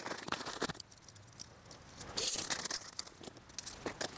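Hands handling small pieces of backpacking gear: crinkly rustling with scattered small clicks and taps, and a louder rustle a little past halfway.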